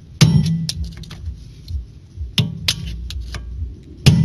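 Hammer striking a flat screwdriver used as a drift, knocking the old wheel-bearing outer race out of a Ford Sierra's front hub knuckle. Sharp metal-on-metal blows: about four in quick succession in the first second, then a faster run of five near the end.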